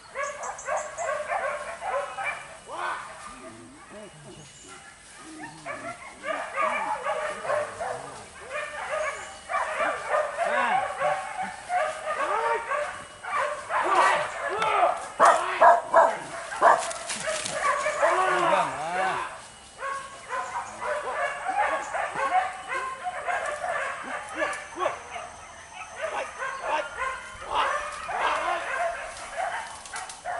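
A pack of hunting dogs yelping and baying in a dense, overlapping chorus of short high yelps, loudest about halfway through.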